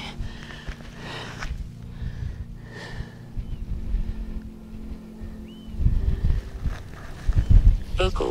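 A steady low engine hum that stops about six seconds in, then wind buffeting the microphone in heavy gusts toward the end.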